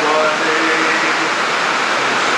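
A steady loud hiss fills a pause in a chanted hymn. The last sung note fades out about half a second in.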